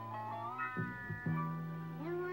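Music playing from a vinyl record on a turntable: held notes that slide up in pitch, break off and drop, then settle on a new steady note.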